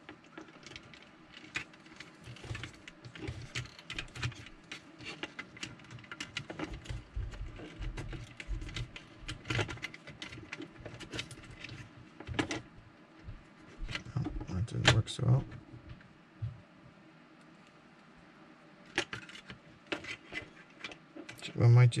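Irregular light clicks, taps and rattles of a plastic Hornby OO-gauge APT coach body and chassis being handled as the capacitor is repositioned inside, with a quiet pause about three quarters of the way through.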